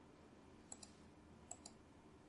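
Near silence broken by a few faint, short clicks at the computer, in two quick pairs less than a second apart, as when advancing slides.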